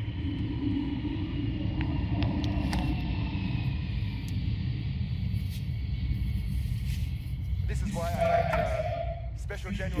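Airplane passing overhead: a steady low rumble with a faint whine that slowly falls in pitch.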